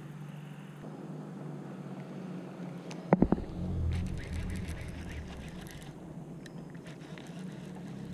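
Fishing rod and baitcasting reel being handled for a cast: a quick cluster of sharp clicks and knocks about three seconds in, then fainter ticks, over a steady low hum.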